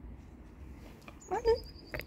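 English Cocker Spaniel giving one short, rising whine about a second and a half in. It is followed by a thin, high, quickly pulsing chirp.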